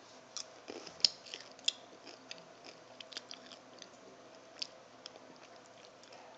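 A person chewing a sugar-shelled chocolate Smarties candy. There are a few sharp crunches in the first two seconds, the loudest about a second in, then quieter, irregular chewing clicks.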